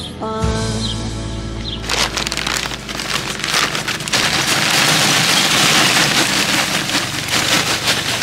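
Lumpwood charcoal poured from a paper sack into a barbecue grate: a dense clattering rattle of lumps tumbling onto one another. It starts about two seconds in, after the last held notes of a song ring out, and runs on to the end.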